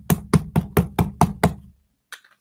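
Plastic squeeze bottle of white acrylic craft paint being knocked in a quick run of about eight sharp knocks, about five a second, stopping suddenly shortly before the end.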